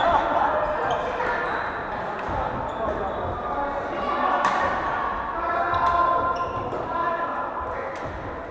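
Badminton rackets striking a shuttlecock during rallies, a few sharp hits with the clearest about halfway through, echoing in a large hall. Players' voices call and chatter throughout.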